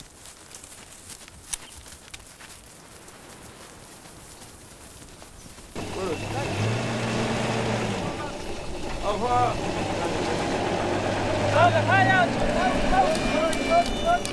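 Faint outdoor background, then about six seconds in a steady low hum starts, with voices calling out over it.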